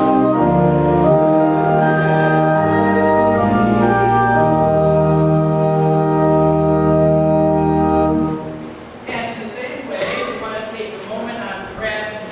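Church organ playing sustained chords that stop abruptly about eight seconds in, followed by quieter murmuring voices.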